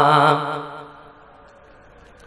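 A man's chanted sermon phrase ending on a long held note with vibrato, amplified through a microphone and sound system. About half a second in, the note breaks off and dies away in the echo, leaving only faint background noise.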